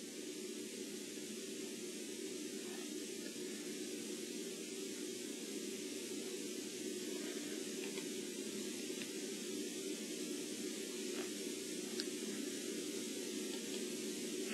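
Steady hiss of background noise with a few faint clicks.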